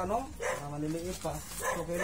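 Voices talking, with a puppy barking among them.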